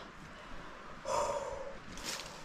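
A man breathing out hard once, a single long "hoo" exhale about a second in.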